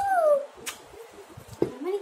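Two short sliding vocal sounds: one falling in pitch at the start and one rising near the end, with a single light click between them.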